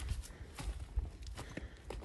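Footsteps of a person walking over rough ground, a few uneven steps, over a low rumble.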